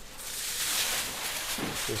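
Aluminium foil crinkling as hands crimp and press it around the rim of a roasting pan, a steady crackly rustle.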